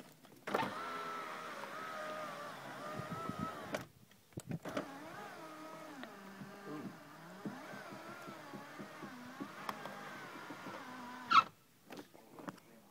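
NSX power window motor running slowly, a steady whine with a wavering pitch. It makes a short run of a few seconds, then after a brief pause a longer run of about seven seconds that stops with a sharp clunk near the end. The slowness is the sign of the worn original window mechanism.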